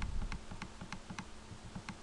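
Computer mouse button clicked repeatedly, about five light, unevenly spaced clicks.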